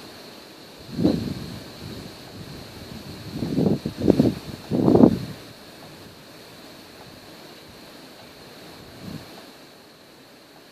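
Wind buffeting the microphone in gusts, strongest about a second in and again between three and five seconds in, then settling to a steady hiss.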